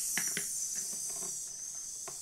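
A steady, high hissing 'sss' sizzle standing in for meat cooking on a toy grill. A few light clicks of small plastic toy pieces being handled come about half a second in.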